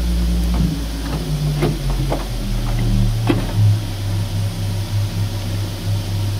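Pipe organ's 16-foot pedal Bourdon, on a 1906 Peter Conacher tracker-action organ, played on its own: a few deep bass notes in turn, stepping downward, the last one held. A few light knocks can be heard under the notes.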